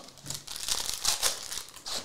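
Plastic shrink wrap being torn and crinkled off a sealed trading-card hobby box, in a run of irregular crackly rustles, loudest about a second in.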